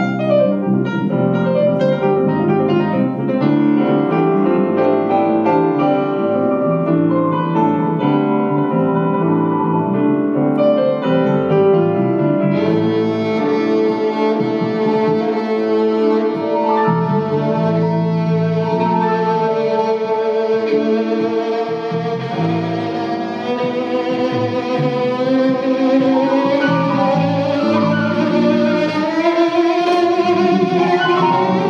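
Live instrumental music on digital piano and violin. A Roland FP-7 digital piano plays chords alone at first; about twelve seconds in, a bowed violin comes in with a sustained melody, sliding upward in pitch near the end.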